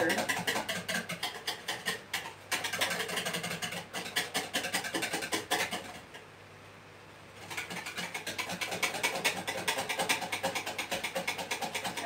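Cheesecake batter being beaten by hand in a bowl: fast, steady clicking strokes of the utensil against the bowl, with a short pause about six seconds in. The batter is still thin and runny, and it is being whisked by hand for want of an electric beater.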